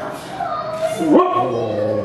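A young child's high-pitched vocal sounds, loudest about a second in, where a squeal slides sharply down in pitch, with a short breathy hiss just before it.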